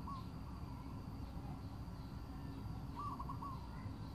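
A bird's short call of a few quick notes, heard at the very start and again about three seconds in, over a steady low rumble.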